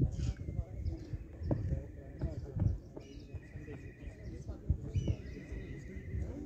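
Open-air cricket practice ambience: several sharp knocks, a high quavering call that steps down in pitch twice in the second half, and faint voices in the background.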